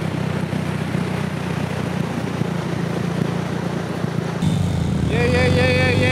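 Dirt bike engines running at idle, a steady low drone under wind and surf noise, growing louder about four seconds in. Near the end a person's voice calls out in a long, wavering cry.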